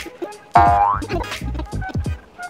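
Background music with a steady, deep beat; about half a second in, a quick rising tone glides upward.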